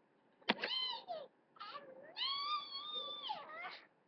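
Three high, meow-like calls: a falling one about half a second in, a short one, then a long drawn-out one that drops in pitch at its end.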